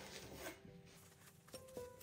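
Faint background music: soft held notes, with a couple of new notes coming in during the second half.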